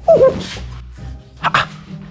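A man's short startled yelp that falls in pitch, then a brief second cry, over a low background music bed.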